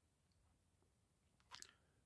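Near silence: room tone, with one brief faint mouth sound about one and a half seconds in.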